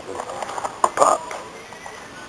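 A quick run of knocks and rustles from plush toys being grabbed and handled close to the microphone, loudest about a second in, mixed with brief voice-like sounds.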